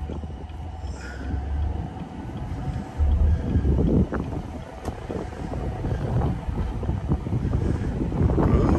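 Wind rushing through the open cabin of a moving Chevrolet Camaro SS convertible with its top down, buffeting the microphone over the car's road and engine noise. The low rumbling gusts are loudest for the first couple of seconds and again around three seconds in.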